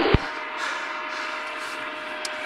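A short knock at the very start, then a steady low hiss with a faint hum: the background noise of a police body camera's microphone while no one speaks.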